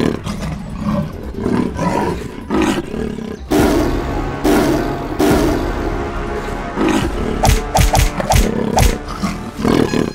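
Lion roaring repeatedly over background music, with several thumps in the second half.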